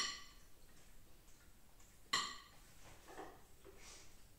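A metal spoon clinks once against tableware about two seconds in, a short ringing clink that dies away quickly, followed by a few faint, softer sounds.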